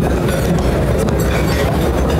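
Steady low rumbling room noise in a large, crowded hall, as loud as the speech around it, with no clear words.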